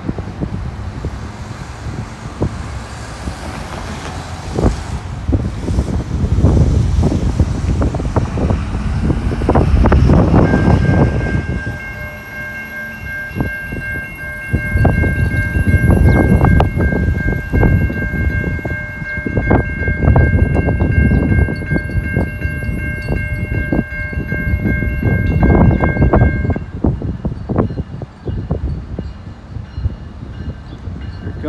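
Freight locomotive's multi-chime air horn sounding one long, steady chord of about sixteen seconds, starting about ten seconds in, as the train approaches along the street-running track.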